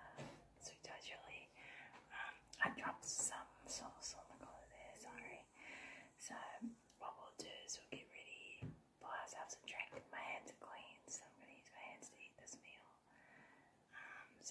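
A woman whispering close to a microphone, her words soft with sharp hissing consonants.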